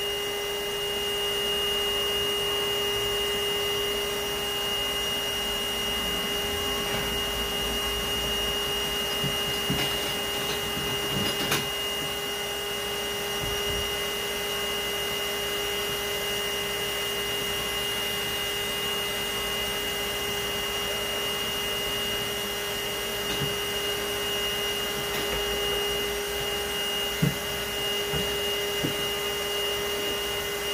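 Bee vacuum (a vacuum motor head on a bucket) running steadily with a constant whine. A couple of brief knocks sound over it, one about a third of the way in and one near the end.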